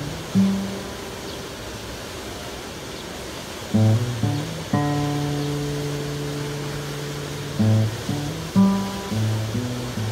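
Slow instrumental guitar music over a steady background wash of fountain water. A few sparse plucked notes come first, then a chord rings out from about five seconds in and slowly fades, followed by more single notes near the end.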